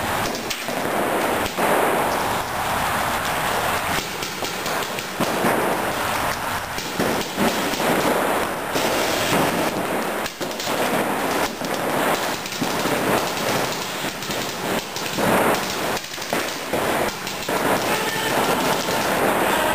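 Several paintball markers firing rapid, overlapping strings of shots in an indoor hall, making a dense, continuous crackle of pops with short surges.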